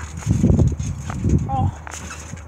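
Children jumping on a trampoline, with low thuds of feet and bouncing balls on the mat in two bouts, and a brief voice near the end.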